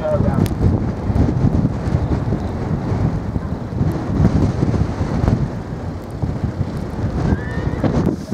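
Wind buffeting the microphone, a fluctuating low rumble throughout, with indistinct voices faintly underneath.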